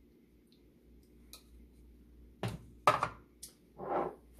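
Quiet for a couple of seconds, then three or four short knocks and clatters from about halfway: a measuring cup set down on the kitchen counter and spice jars picked up.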